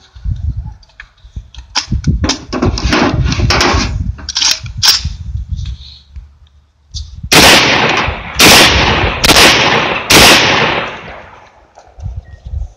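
Four 12-gauge shots from a Catamount Fury II semi-automatic shotgun, fired rapidly about a second apart in the second half, each very loud with a ringing tail that fades. Before them come scattered clicks and knocks as the gun is handled.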